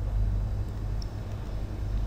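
Steady low background hum under faint room noise, with no distinct events.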